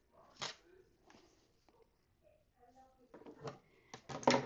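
Near silence, broken by one short handling noise about half a second in and a few faint rustles and taps later, as fabric and a clear acrylic quilting ruler are moved on a wooden table.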